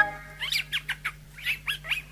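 Bird chirping: a run of short, quick downward-sliding chirps, about five a second, heard as the music breaks off.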